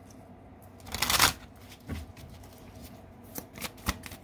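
A deck of oracle cards being shuffled by hand: a loud rush of cards sliding together about a second in, a smaller one shortly after, then a few short sharp card slaps and clicks near the end.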